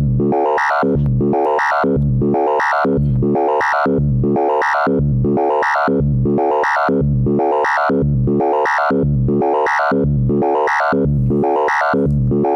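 Doepfer A-111-1 analogue VCO playing a repeating sequence of synth notes, about two a second. Its pitch is exponentially frequency-modulated at audio rate by a second oscillator, giving inharmonic, sideband-rich tones.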